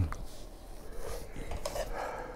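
Chopsticks and a spoon clicking lightly against a serving tray as the utensils are picked up, after a low thump at the start.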